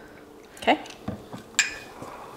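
A couple of light knocks, then one short ringing clink, as a glass measuring cup and a milk carton are handled and set down on a stone countertop.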